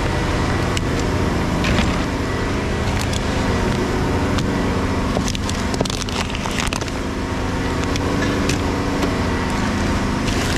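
Plastic bags and bottles crackling and rustling as a gloved hand rummages through rubbish in a metal skip bin, with a cluster of clicks about halfway through, over a steady low mechanical hum.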